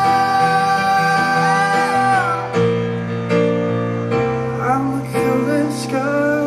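Live male voice holding a long sung note over chords on a Yamaha Motif ES8 electric keyboard; the note ends about two seconds in and the keyboard chords carry on with only brief vocal touches.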